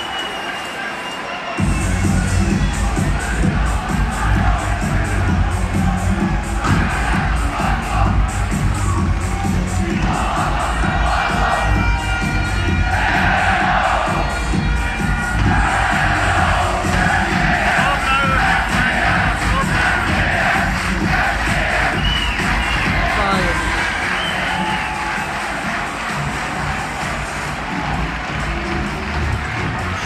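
Large arena crowd cheering and chanting over loud music with a heavy bass beat that kicks in about two seconds in.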